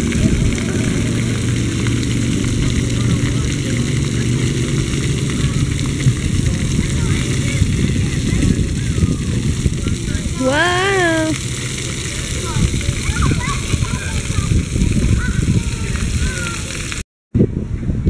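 Splash pad water jets spraying with a steady hiss, with children's voices over it and one high-pitched child's call about ten seconds in.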